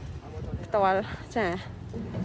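A person speaking Thai, two short phrases, over a low steady hum.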